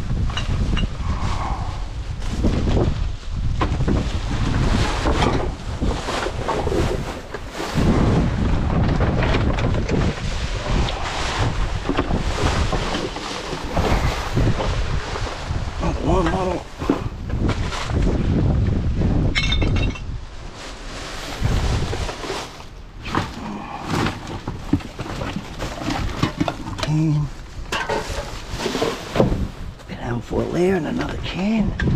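Plastic rubbish bags and packaging crinkling and rustling as a gloved hand rummages through a dumpster, over a low rumble of wind on the microphone.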